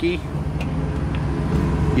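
A vehicle engine idling with a steady low rumble, and a faint click or two as a push-to-open fuel door is pressed and pops open.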